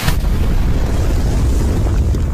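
Explosion sound effect: a sharp blast at the start, then a steady heavy rumble.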